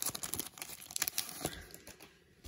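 Glossy Topps Stadium Club baseball cards being handled: irregular rustling, crinkling and small clicks as the cards slide against each other and against the fingers, thinning out near the end.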